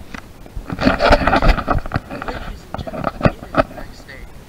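A short laugh amid a run of irregular knocks and rustling close to the microphone, the kind made by a handheld camera being handled.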